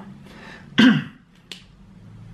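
A brief, low voice sound from the man with a falling pitch a little under a second in, then a single sharp click about half a second later.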